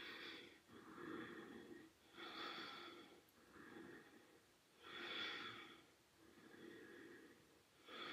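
A person breathing slowly and evenly while holding a core-strength position: faint, regular breaths in and out, a fuller breath about every two and a half seconds.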